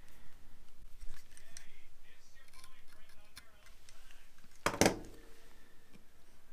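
Small blade cutting the tag end of nylon rod-wrapping thread: faint handling ticks, then one sharp snip about three-quarters of the way through.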